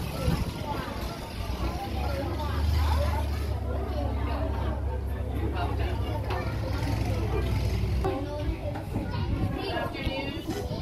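Children's voices chattering in a classroom, several talking at once, with a steady low rumble underneath from about two seconds in until near the end.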